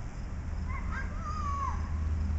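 A high-pitched whining vocal sound that wavers and then slides down in pitch, lasting about a second, over a steady low rumble.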